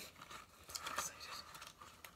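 Faint scraping and rustling of a small cardboard box being opened and a plastic blister strip of contact lenses being slid out of it, with a sharper tick about a second in.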